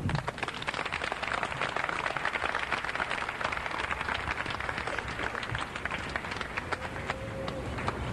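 Audience applauding: a dense patter of many hands clapping at the close of a speech, thinning out toward the end.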